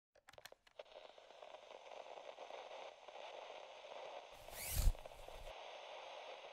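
Sound effects for an animated intro logo. A few soft clicks and a faint crackling scrape are followed, just before five seconds in, by a rising whoosh that ends in a low thud.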